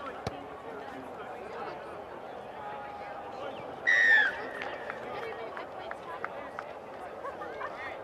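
A rugby league ball thuds once as it is kicked off the tee just after the start. About four seconds in comes a short, loud whistle blast whose pitch drops at the end. Sideline voices chatter underneath.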